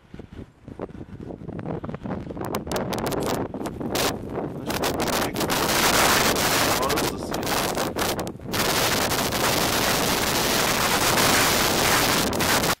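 Wind buffeting the microphone: scattered crackles build over the first few seconds into a loud, steady rushing roar that dips briefly twice near the end.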